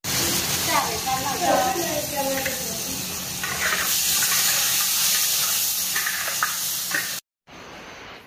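Pig trotters frying in a large iron wok, a loud steady sizzle as they are stirred with a ladle; it cuts off abruptly about seven seconds in.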